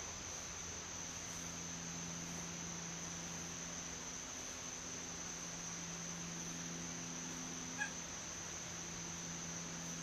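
Faint steady insect trilling, typical of crickets, over a low steady hum, with one short pitched chirp about eight seconds in.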